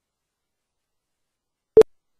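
A single very short computer beep, a mid-pitched tone, near the end of an otherwise silent stretch.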